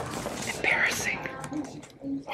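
Quiet whispered speech close to the microphone.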